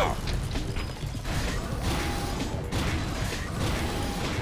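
Cartoon sound effects of a giant robot moving: dense mechanical clatter and creaking over a low rumble.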